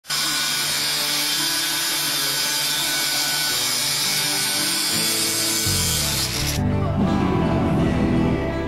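Angle grinder cutting into metal, a loud steady grinding that stops abruptly about six and a half seconds in. Low band music comes in underneath just before it stops and carries on after.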